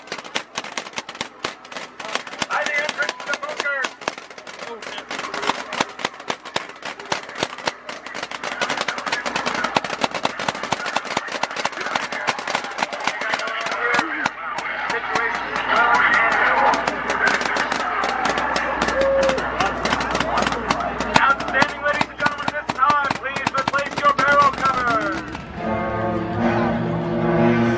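Paintball markers firing in long rapid strings, many shots a second, with voices calling out over the shooting. The shooting cuts off just before the end.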